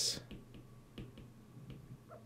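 A few faint, short clicks and taps, irregularly spaced, about five over two seconds.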